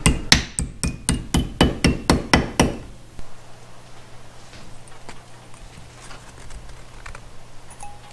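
Hammer blows on a small flat metal bracket clamped in a bench vise, bending it into a bracket: a fast run of about a dozen ringing metal-on-metal strikes, roughly four a second, that stop about three seconds in. Faint handling of the bracket in the vise follows.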